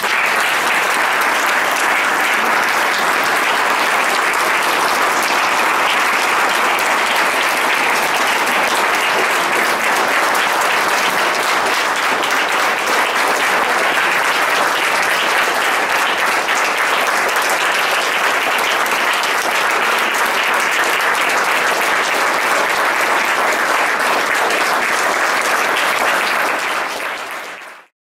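Audience applauding, a long, steady round of clapping that starts suddenly and fades out near the end.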